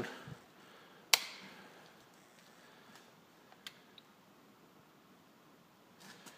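One sharp knock with a short ringing decay about a second in, then two faint clicks, over quiet room tone.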